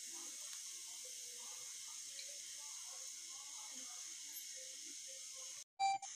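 Quiet room tone: a steady hiss with faint, indistinct voices in the background, broken by a short gap near the end.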